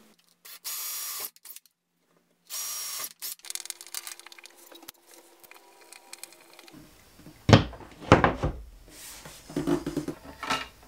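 Power drill driving screws into a wall bracket in two short, steady runs about a second and a half apart. Rattling of hardware follows, then several loud knocks and clatter of a metal box being set against the wall.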